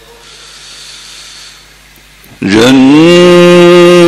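Faint hiss in a pause, then about two and a half seconds in a male Quran reciter starts a loud, long held note of melodic chanted recitation into a microphone. His voice slides up briefly and then holds one steady pitch.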